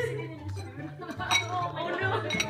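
Pet food and water bowls clinking and knocking against each other and the floor as a cat bumps into them and tips one over. The sharpest knocks come about a second and a half in and again near the end.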